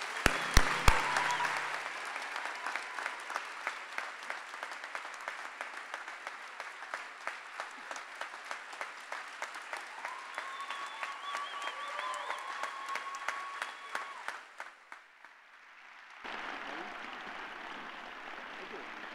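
Audience applauding, loudest in the first couple of seconds, then dying away briefly near the end before picking up again.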